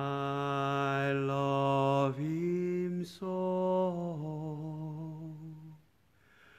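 A man singing unaccompanied in long held notes, stepping up in pitch about two seconds in, with a short break a second later. The singing stops just before the end.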